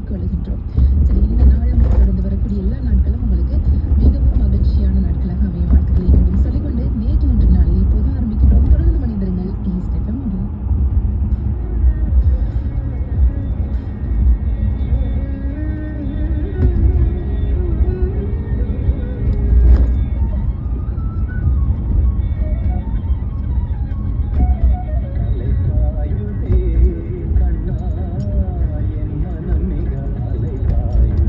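Radio music with a singing voice playing inside a moving car's cabin, over the car's steady low road and engine rumble.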